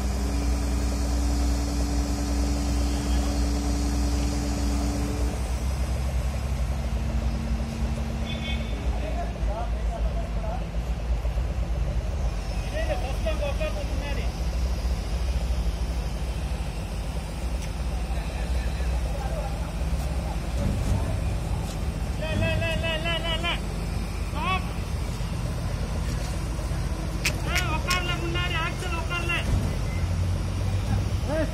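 Heavy diesel engine of a truck-mounted crane running steadily, with a steady whine over it for the first few seconds. Men's voices call out now and then.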